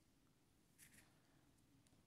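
Near silence: room tone, with one faint brief rustle a little under a second in.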